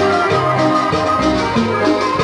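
Live cumbia band playing, with drums and percussion under sustained melodic notes and a bass line.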